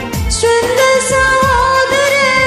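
A woman singing a Malayalam Christian song over a karaoke backing track with a steady beat. She holds one long note that starts about half a second in.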